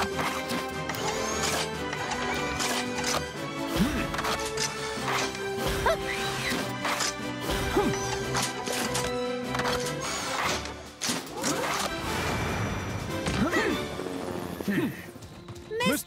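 Cartoon background music with many sharp metallic clanks and clicks running through it, the sound effects of the robot cars transforming from vehicles into robots.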